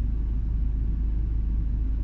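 Steady low rumble of a car heard from inside its cabin, even and unchanging throughout.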